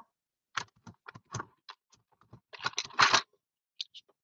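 Pencil marking a sheet of patterned paper: a string of short scratchy strokes, the longest and loudest about three seconds in.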